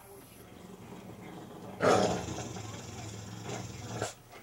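Bulldog letting out a sudden loud bark about two seconds in, running on as a rough growl.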